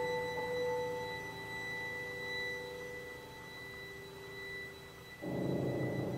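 Mixed chamber ensemble of winds, strings and piano holding soft sustained notes that slowly fade, over a thin high tone that is held throughout. About five seconds in, the ensemble comes in with a fuller, louder chord.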